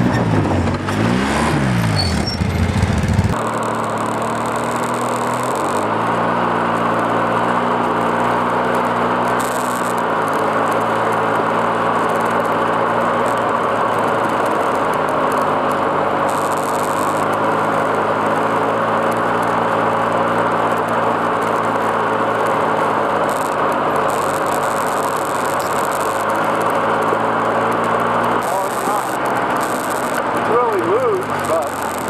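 ATV engine revving up and down as the quad climbs past close by; after a cut, a quad's engine runs steadily under load on a rocky trail, with gravel and wind noise, shifting pitch a few times.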